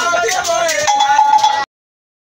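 A group of men singing a jama chant together, with hand claps and sharp percussive strikes keeping the beat. It cuts off suddenly about three-quarters of the way through, leaving silence.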